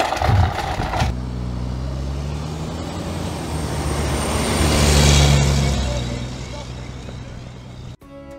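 A vehicle's motor running steadily, growing louder to a peak about five seconds in and then fading.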